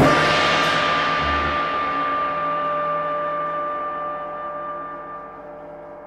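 A gong struck once, its shimmering ring slowly dying away over about six seconds as the final stroke of a jazz piece.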